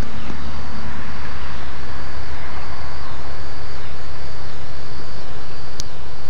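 Wind buffeting the phone's microphone: a loud, steady rumbling noise, with a single sharp click near the end.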